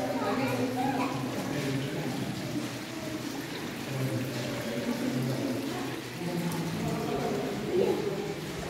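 Indistinct voices of people talking, over water trickling down cave flowstone and dripping into a pool.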